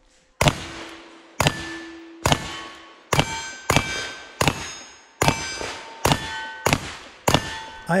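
Ten shots from a pair of Ruger New Model Single-Six .32 H&R revolvers firing black-powder loads, fired in a steady string about one a second. After most shots a steel plate target rings out with a clear tone that fades away.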